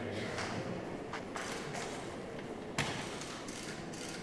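Room ambience with a low murmur of voices and several sharp clicks, the loudest nearly three seconds in.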